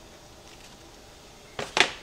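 Quiet room tone, then near the end two quick sharp knocks: an empty black plastic meat tray being set down on the countertop.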